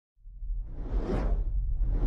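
Whoosh sound effects from an animated logo intro over a deep, steady rumble. One whoosh swells, peaks about a second in and fades, and a second one builds near the end.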